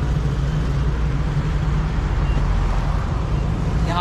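Steady road traffic noise from vehicles passing on a highway, mostly a low rumble.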